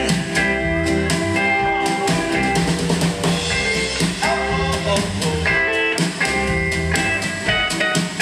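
A live alt-country band playing an instrumental passage without singing: electric and acoustic guitars over drums.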